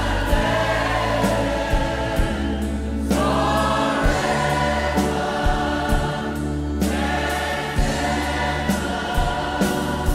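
Gospel worship music: a choir or congregation singing long held phrases over a band with bass and a steady drum beat.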